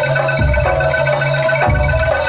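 Live Javanese gamelan music for a jaranan dance: struck metallophones play a repeating melody over deep low strokes that come about every second and a quarter.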